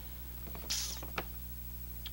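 Quiet pause with a low, steady electrical hum, a short soft hiss a little under a second in and a single faint click just after it.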